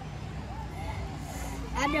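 A low, steady engine rumble with faint distant voices in the background; a man's voice comes in close near the end.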